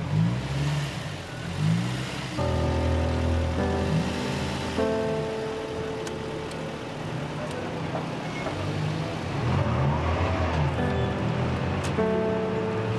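Car engines passing, their pitch rising and falling as they move and rev. Sustained background music notes come in about two seconds in.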